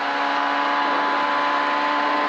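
Ford Escort rally car's engine running flat out along a straight, its note holding steady, heard from inside the cabin.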